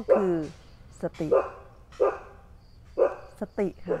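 A dog barking several times in short, separate barks, about a second apart.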